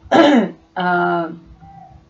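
A woman clearing her throat: two short voiced sounds, the first falling in pitch, the second held briefly at one pitch, then a lull.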